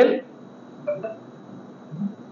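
Two brief high electronic beeps, one just after the other, about a second in, over faint room hiss.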